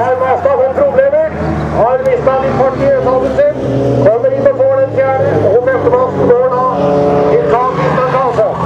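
Bilcross stock cars racing through a bend on a gravel track, their engines running steadily under power. An announcer's commentary over a loudspeaker runs on top.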